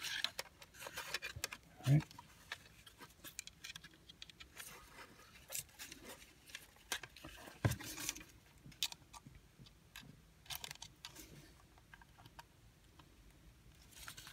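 Small plastic clicks and rattles of a car's outside-temperature display housing being handled, with metal alligator-clip test leads snapping onto its pins: scattered light ticks and a couple of soft thumps.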